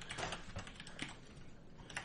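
Faint, irregular clicking of computer keyboard keys as someone types.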